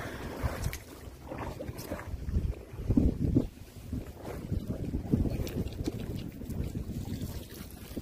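Wind buffeting a phone microphone on an open boat at sea: a low, uneven rumble with louder gusts about three and five seconds in.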